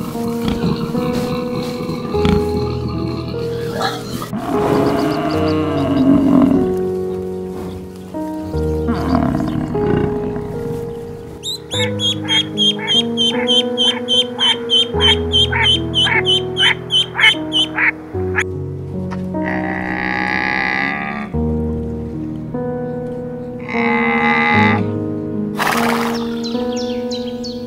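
Background music with a mallard duck and ducklings calling over it: a fast, even run of sharp calls, about three a second, for some six seconds in the middle. Other short animal calls come earlier and near the end.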